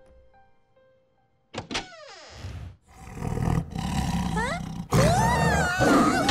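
Soft piano music fades out, a sharp hit sounds about a second and a half in, then a cartoon leopard's loud roar follows. Near the end a boy's loud, wavering scream of fright comes in over it.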